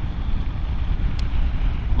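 Steady wind rush over a motorcycle rider's microphone with the low rumble of the engine and tyres underneath, the bike cruising at road speed.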